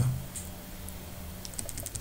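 Computer keyboard keystrokes: a few quick taps near the end, editing a number in an input field.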